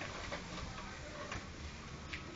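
A few light, scattered clicks and taps of feet on concrete over faint background noise, as puppies and a person in flip-flops move about.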